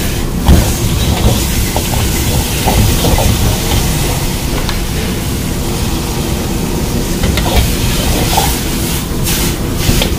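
Hakka noodles being stir-fried in a wok over a high-flame gas burner: a steady loud rush and hiss from the burner and the frying, with the metal ladle clanking against the wok a few times.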